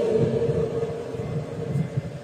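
A pause in speech, filled by a faint steady hum over low background noise.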